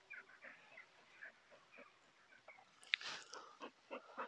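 A small terrier sniffing and snuffling faintly among the plants, with a short louder snuffle about three seconds in.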